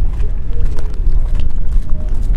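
Wind buffeting the microphone in the open, a loud uneven low rumble, with faint music underneath.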